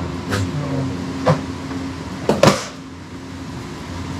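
Steady low hum of refrigeration fans in a chilled produce area, with a few short knocks and clicks from handling the metal shopping trolley and produce crates; the loudest comes about two and a half seconds in.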